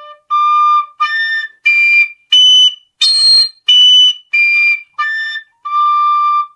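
Generation tabor pipe overblown up its overtone series: a run of short, clear notes stepping up one overtone at a time to a shrill peak about three seconds in, then back down the same steps to a longer low note. Each harder breath brings out a higher note.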